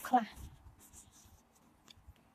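A woman's voice speaking Khmer stops just after the start, followed by a quiet pause with faint rustling and a light click near the end.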